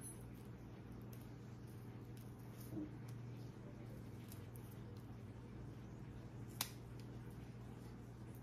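Small scissors snipping a spider plant stem once, a single short sharp click about six and a half seconds in, over a steady low hum.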